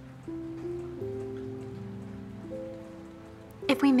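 Soft background music of slow, sustained low notes, the chord shifting a few times.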